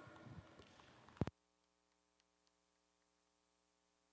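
The public-address microphone is switched off about a second in. A short thump, and the fading arena sound cuts off to near silence with only a faint steady hum left.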